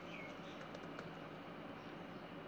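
Faint typing on a computer keyboard: a short run of light key clicks.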